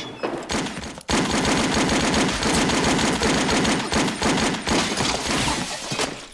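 Film soundtrack of a shootout: rapid, sustained automatic gunfire that starts suddenly about a second in and runs almost without a break until near the end.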